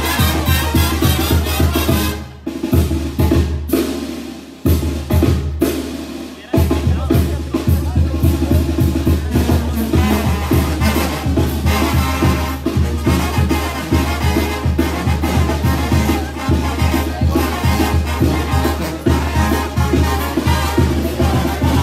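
Mexican brass band (banda) playing, with brass over a steady drum and bass beat. About two seconds in the playing breaks off and thins out. The full band comes back in at about six and a half seconds.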